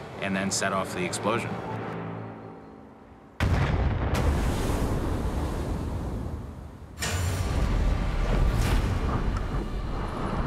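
Test detonation of a full-size replica of the H.L. Hunley's spar torpedo, charged with about 60 kg of black powder, set off in water: a sudden blast about a third of the way in that dies away over a few seconds, then a second sudden blast near the three-quarter mark that stays loud to the end.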